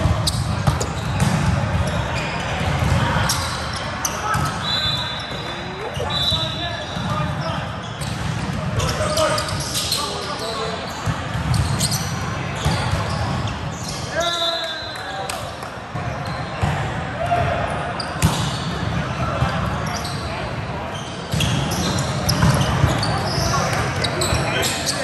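Busy indoor volleyball gym echoing in a large hall: players' voices calling out and chattering over sharp thuds of volleyballs being hit. There are also three brief shrill squeaks, two around five and six seconds in and one about fourteen seconds in.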